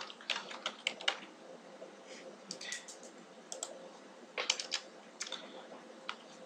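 Typing on a computer keyboard: irregular key clicks in small clusters as a word of about eleven letters is entered.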